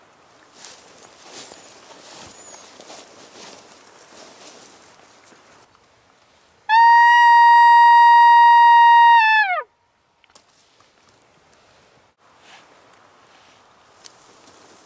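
A loud maral bugle: a single steady whistled note with a buzzy edge, held for about three seconds and dropping in pitch at the end, about halfway through. Faint rustling comes before it.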